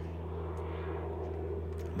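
Airplane flying overhead: a steady low drone.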